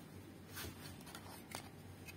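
Faint handling sounds of a small audio amplifier circuit board being picked up on a workbench: a brief scrape about half a second in and a sharp click at about one and a half seconds, over a low steady hum.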